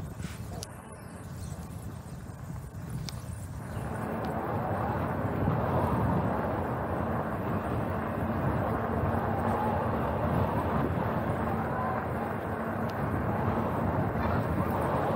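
Wind noise on the microphone and a bicycle's tyre rumble while riding along a city street at about 20 km/h, with a few light rattling clicks early on; the noise grows louder about four seconds in and stays steady.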